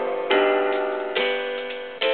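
Gulbransen DH-100 digital hymnal playing a hymn through its built-in speakers in its piano voice. Chords are struck about a third of a second in and again just after a second, each fading away, with a faint high tick near the end.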